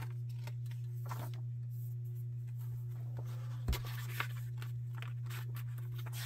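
Pages of a paper pattern booklet being handled and turned: soft rustles and light taps over a steady low hum, with one thump a little past halfway and a small click just after.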